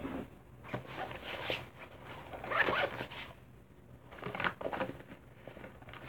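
Makeup products being handled and rummaged through, heard as a string of short, scratchy rustles and scrapes with brief quiet gaps between them.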